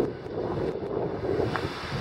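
Wind buffeting the microphone over the low rumble of a car moving slowly.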